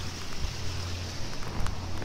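Spring floodwater rushing steadily through a dam spillway, a continuous noise.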